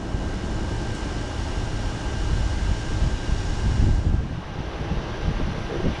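Long low rumble of distant thunder from an approaching storm, swelling about three to four seconds in, over the steady hum of a window air conditioner.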